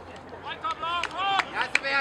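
Several men shouting together in loud rising and falling calls, starting about half a second in, with a few sharp claps or knocks among them.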